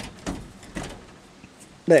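A few short knocks and clunks of an old car's body and interior being handled, three in the first second and a fainter one later; a man's voice starts right at the end.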